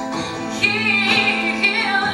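A woman singing live to her own strummed acoustic guitar, holding one long note through most of the passage.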